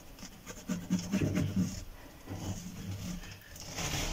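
A hand stroking a green iguana's scaly skin: soft, irregular rubbing and scraping strokes.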